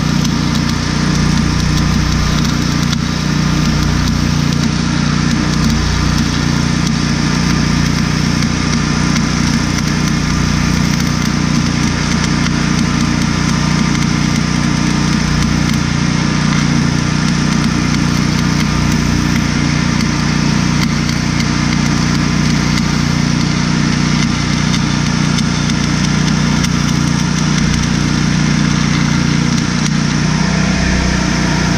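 Stick-welding arc crackling and hissing steadily as a rod burns along a steel joint, over the steady hum of a small engine running. The arc stops right at the end.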